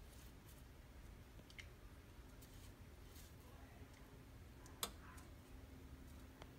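Near silence: faint scattered clicks and taps of a silicone pastry brush dabbing melted butter onto dough in a glass baking dish, with one sharper click a little before five seconds in.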